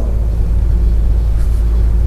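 Steady, loud low electrical hum with faint buzzy overtones, carried on the studio broadcast audio.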